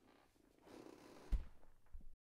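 Faint rustling of movement close to the microphone, with a dull low thump about one and a half seconds in and a softer one near the end, after which the sound cuts off suddenly.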